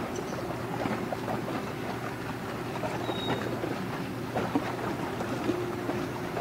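A large container ship passing close: a steady low engine drone under the crackling wash of its bow wave on the water. A brief high whistle sounds about three seconds in.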